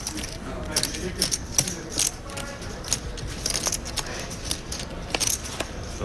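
Poker chips clicking and clacking irregularly as they are handled at the table, over a faint murmur of voices.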